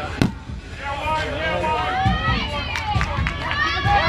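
An orange rubber kickball hitting the ground with a single sharp thump just after the start, followed by players shouting and calling out.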